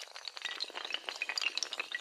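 Rows of dominoes toppling in a cascade: a fast, dense clatter of small overlapping clicks that carries on without a break.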